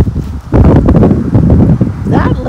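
Wind buffeting the microphone: a loud, gusty low rumble that dips briefly about half a second in.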